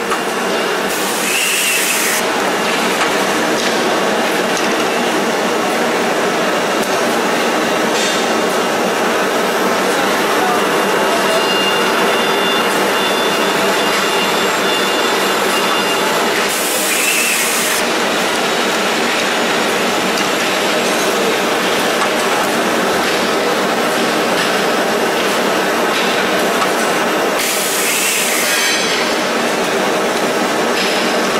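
CDH-210F-2 handkerchief tissue machine line running with a steady, loud mechanical din. Three short hisses of about a second each come near the start, in the middle and near the end.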